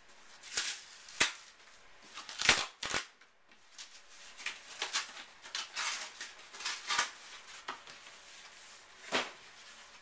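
Cardboard shipping mailer being torn open by hand: a string of sharp rips, snaps and rustles, the loudest about two and a half seconds in.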